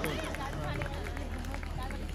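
Scattered chatter of a gathered crowd, several voices talking at once at a moderate level, over a steady low hum.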